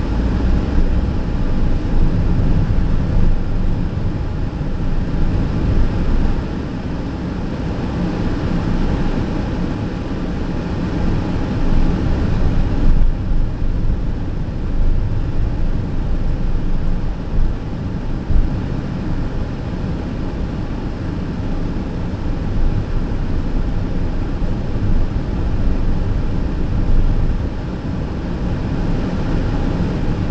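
Car driving slowly through an underground parking garage, heard from inside the cabin: a steady low engine and tyre rumble with small swells in loudness.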